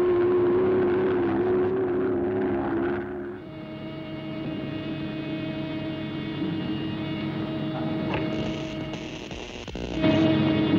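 Cartoon sound effects: a steady, slightly wavering mechanical drone as a flying robot passes overhead. About three seconds in it cuts to a quieter, steady electric hum from a control panel, with a click near the end.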